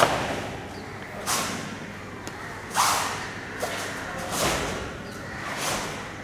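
Karate gi snapping sharply with each strike of a kata: five crisp snaps about a second and a half apart, the first the loudest.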